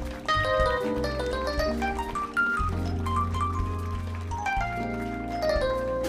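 Live band music featuring a stage keyboard with a piano sound: quick runs of short, bright notes over long, held bass notes.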